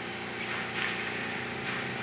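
A steady, even mechanical hum in the background with faint steady tones, and no distinct events.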